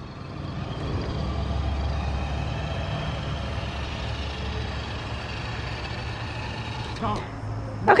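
Distant tractor-pull engines, a heavy, steady rumble with a faint high whine. It swells about a second in and holds for several seconds.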